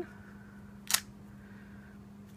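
A single sharp click about a second in from the clear acrylic stamping block, with its rubber stamp, being lifted off the cardstock and handled, over a faint steady hum.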